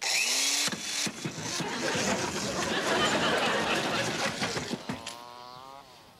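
Corded electric drill with a screwdriver bit driving screws into a wooden board: the motor's pitch rises as it starts, then a long grinding noise as the screws go in. Near the end the motor speeds up again.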